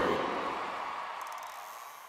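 Theatre audience applauding and cheering, fading away steadily.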